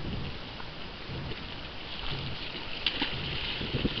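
Wind buffeting the microphone over lake water lapping at shoreline rocks, with a few short splashes near the end as a released smallmouth bass goes back into the water.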